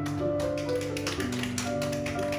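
A few people clapping by hand, quick, slightly uneven claps, over a keyboard accompaniment holding sustained notes while the ocarina rests.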